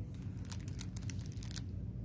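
Clear plastic cellophane packaging crinkling as it is handled: a quick run of crackles about half a second in, lasting about a second, over a steady low hum.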